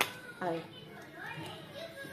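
Speech: a woman says a short word, with children's voices in the background. There is a sharp click right at the start.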